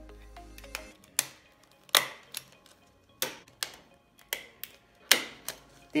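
Handheld stapler snapping staples through a thin plastic bottle strip: about eight sharp clicks, some in quick pairs.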